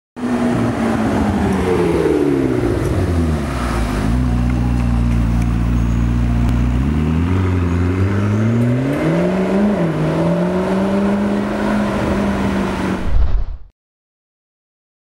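McLaren MP4-12C's twin-turbo V8 running at low speed. Its note falls, holds steady for a few seconds, then rises as the car pulls away, dips briefly and levels off. The sound cuts off suddenly near the end.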